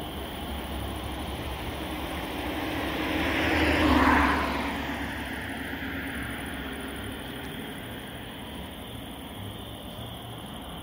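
A vehicle passing close by, its noise swelling to a peak about four seconds in and then fading away, over a steady low rumble.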